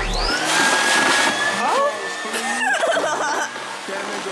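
Build-A-Bear stuffing machine switched on by its foot pedal, its blower starting just after the opening and running with a steady rush of air as it blows fluff through the nozzle into a plush bear.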